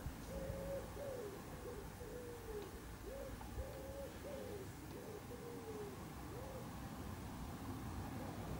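Common wood pigeon cooing: a string of faint, low coos, each rising and falling in pitch.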